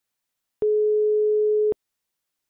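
One telephone ringback tone: a single steady beep of about a second, heard on the caller's line while the called phone rings.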